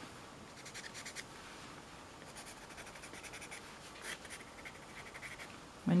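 Pastel pencil scratching lightly on textured watercolour paper in quick, short hatching strokes, in three brief runs.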